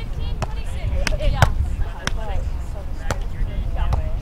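Sharp slaps of hands striking a beach volleyball, several hits in a row during a rally, the loudest about one and a half seconds in.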